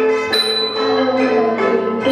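Khmer traditional ensemble music: roneat xylophones and a khim hammered dulcimer struck with mallets, carrying a melody of held notes that move in steps. There is a bright new round of strikes about a third of a second in.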